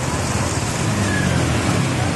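Traffic driving through floodwater: car and motorbike engines running over a steady wash of water pushed aside by the wheels.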